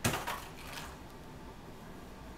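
A short rattling clatter of light hard plastic knocking together: a sharp first hit followed by a few smaller rattles, all over within about a second.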